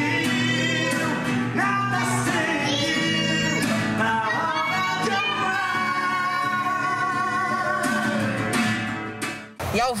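Two small children singing a sertanejo-style song to an acoustic guitar strummed by a man beside them. The singing and guitar cut off suddenly just before the end.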